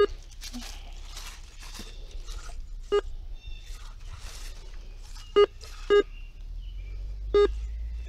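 Metal detector giving five short, single-pitched beeps, spaced one to two and a half seconds apart, as its coil sweeps over a buried target, with faint rustling between them. The detector reads the target as most likely a pull tab.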